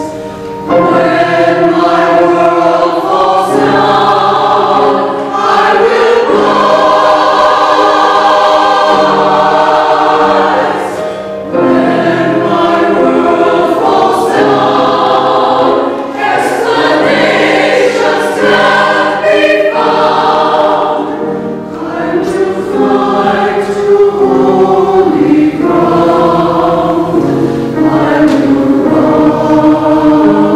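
Mixed church choir of women and men singing a choral anthem in parts, in sustained chords and long phrases with short breaths between them.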